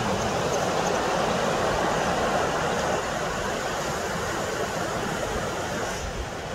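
Ocean surf: small waves breaking and washing in, a steady rushing noise that eases slightly about halfway through.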